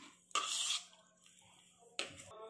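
A metal spoon stirring and scraping in a bowl as sauce and mayonnaise are mixed into mashed egg yolk. There is one short scrape about half a second in, then little sound, and a click at the very end.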